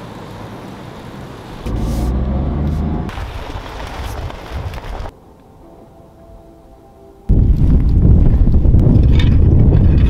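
Wind buffeting an outdoor microphone: a loud, dense low rumble that starts abruptly about seven seconds in, after a quiet stretch. A shorter spell of similar low rumble comes about two seconds in.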